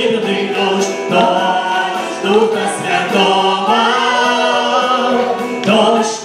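Church worship team singing a praise song together, women's and a man's voices through microphones over electronic keyboard accompaniment, with a long held, rising note in the middle.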